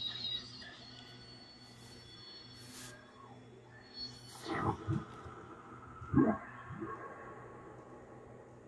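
Experimental electronic music: faint steady high tones, a short hiss, then sweeping pitch glides about four and a half and six seconds in, the second the loudest, over a steady low hum.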